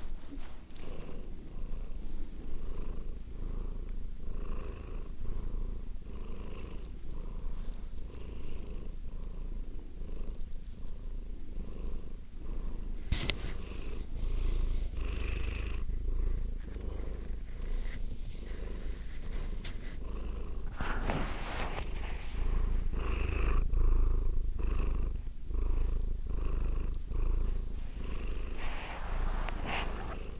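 Domestic cat purring close to the microphone, a continuous low purr that swells and fades with each breath, under a second per cycle. A few short, louder noises break in during the second half.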